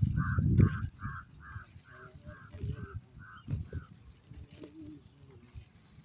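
A short honking call repeated about two or three times a second, fading away about four seconds in. A low wind rumble on the microphone is loudest in the first second.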